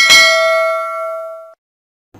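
Bell-ding sound effect for clicking a notification-bell icon: a single struck chime that rings and fades out over about a second and a half.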